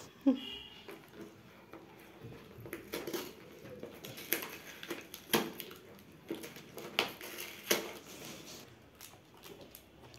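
Cardboard pizza box being handled and opened: scattered taps, scrapes and rustles of cardboard, with a brief child's voice at the start.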